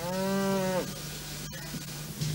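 A cow mooing once: a single call of under a second that drops in pitch as it ends.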